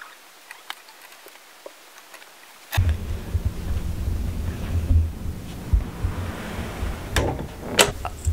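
Faint clicks of clothes hangers on a closet rail. About three seconds in, a sudden steady rumbling rustle starts: handling noise from the handheld camera as it is picked up and carried. A couple of knocks come near the end.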